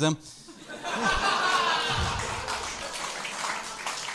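Comedy-club audience laughing at a punchline: the laughter swells about a second in and then slowly dies away.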